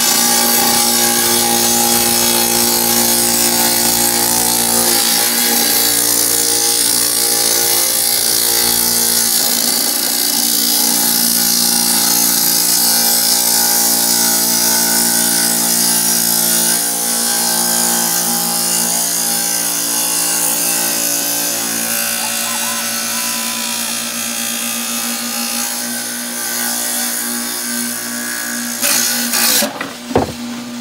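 Kobalt wet tile saw running under load as its blade cuts through a firebrick: a steady motor hum under a loud, continuous grinding hiss. The saw shuts off just before the end.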